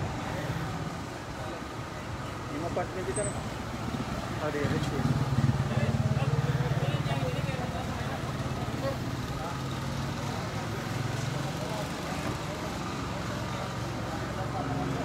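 People talking in the background over a motor vehicle engine running, which grows louder from about five to eight seconds in and then settles.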